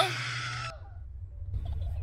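A man's voice saying a short, sharply rising "huh?" in the first moment, followed by a faint, steady low hum.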